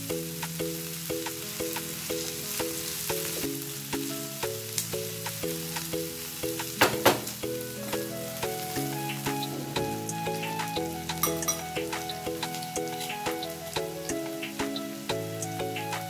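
Background music, a melody of short notes, over onions frying in oil in a non-stick pan with a faint sizzle and crackle as they soften toward translucent. A single sharp knock about seven seconds in.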